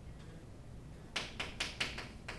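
Chalk striking and scraping on a chalkboard as it writes: about four quick, sharp strokes in under a second, starting a little past a second in.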